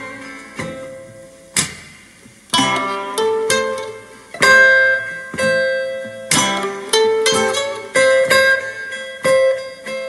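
Instrumental blues guitar break, plucked notes and chords ringing out one after another, played back through an 8-inch field-coil full-range paper-cone loudspeaker driver.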